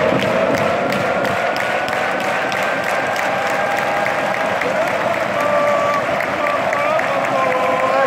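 A large stadium crowd of football supporters applauding and cheering, with rhythmic clapping. Many voices hold a long sung note that turns into a chanted tune about halfway through.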